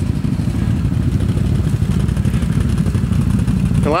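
ATV engine idling, a steady low rumble.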